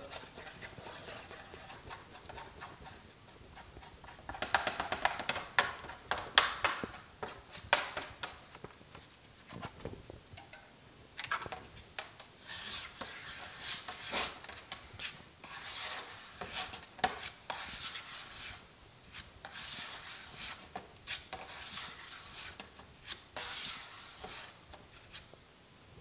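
Body filler and hardener being mixed on a metal mixing board: a spreader scraping and smearing the filler across the sheet in many short, uneven strokes.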